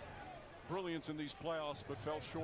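Quiet speech: a voice talking, starting about three-quarters of a second in over a low background hum.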